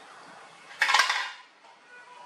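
A short clatter of hard objects knocking together, sudden and loud, about a second in, over a steady low hiss.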